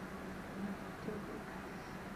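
Quiet room tone with a steady low hum, and a couple of faint small knocks about half a second and a second in.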